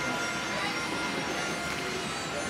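Steady background ambience: faint music with some distant voices, and no distinct nearer sound standing out.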